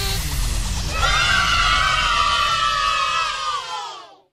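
As the song's music stops, a falling glide is followed about a second in by a long cheer of several voices that sags slightly in pitch and fades out at the end.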